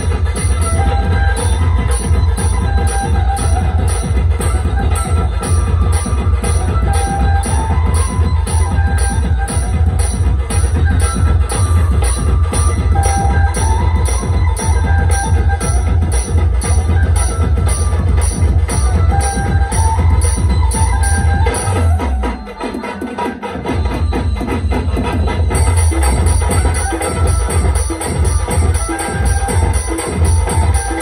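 DJ dhumal beat played on a mobile octopad app: a steady heavy bass drum, fast ticking hi-hats and a repeating melody. About 22 seconds in, the beat breaks. The bass returns after a second or so, and the hi-hats return a few seconds later.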